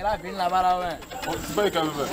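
Men talking, one voice holding a long, drawn-out low vowel about half a second in.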